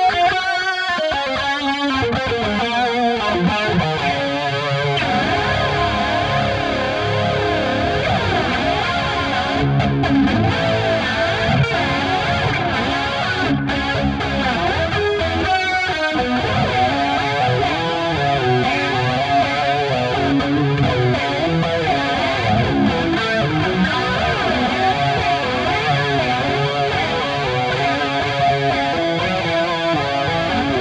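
High-gain distorted electric guitar through a Line 6 Helix amp model, boosted by a Tube Screamer-style overdrive, playing a continuous lead solo with long-sustaining notes. A held note wavers with vibrato near the start.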